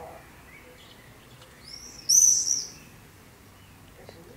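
Common swift screaming: one shrill burst of high, arching notes about a second long, halfway through.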